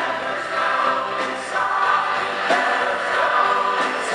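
Live rock band playing, with several voices singing together over electric guitars, bass and drums, heard from the audience in a theatre. Cymbal or drum hits land about every second and a quarter.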